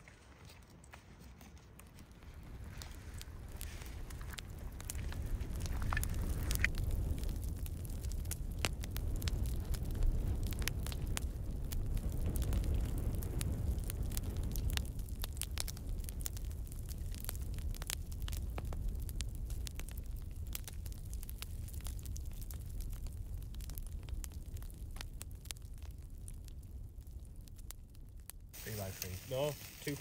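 Wood fire of freshly lit split kindling catching and burning: frequent sharp crackles and pops over a steady low rumble that builds over the first few seconds.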